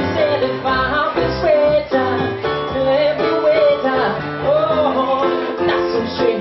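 Live pop song: a man singing over electric keyboard accompaniment, with the sung melody wavering above steady held chords.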